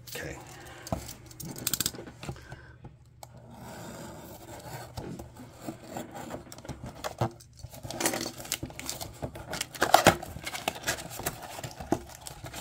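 Cellophane shrink wrap being cut and peeled off a cardboard trading-card box: irregular crinkling, clicks and scraping, then the box opened, busier and louder in the last few seconds.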